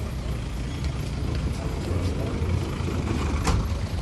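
Minibus engine running close by: a low, steady rumble, with a short sharp click about three and a half seconds in.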